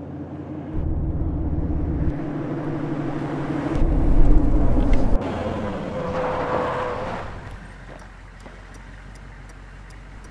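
Car engine and road noise, stepping up about a second in and loudest around four to five seconds, then dropping to a quieter steady hum. A brief steady whine sounds around six seconds.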